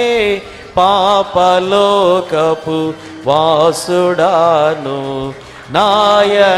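A man singing a devotional Christian song solo into a microphone. Each phrase is melodic, with held notes that waver and bend, and short breaths between phrases.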